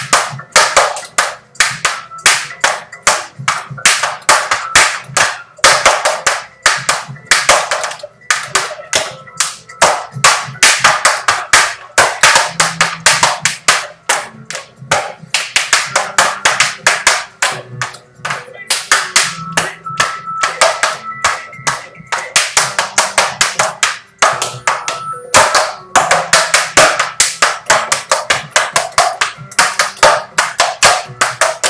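Tap shoes' metal taps striking the floor in fast, rhythmic clusters of steps during a tap dance combination, with brief pauses between phrases.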